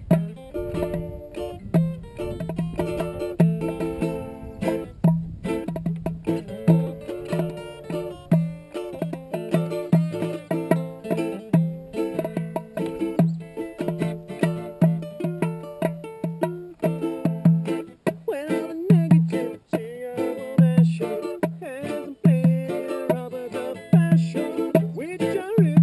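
Live acoustic roots reggae jam on ukulele and acoustic guitar, strummed in short, regularly repeating chords.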